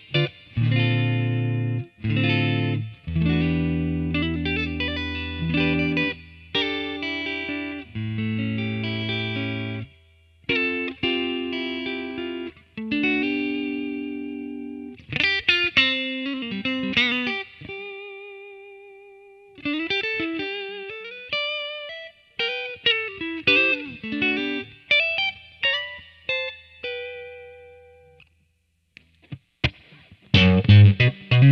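Fender Custom Shop '61 Telecaster Relic electric guitar, ash body with rosewood fingerboard, played through an amp. The first half is ringing chords. The second half is single-note lines with bends and vibrato, and the last note dies away near the end.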